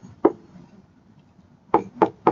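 Stylus tapping on a tablet screen during handwriting: a sharp tap just after the start, a quiet stretch, then another tap near the end.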